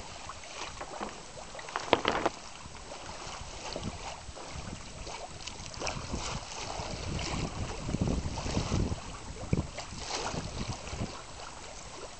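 Water splashing and lapping against a boat's hull, with gusts of wind buffeting the microphone. A sharp knock comes about two seconds in and another shortly before the end.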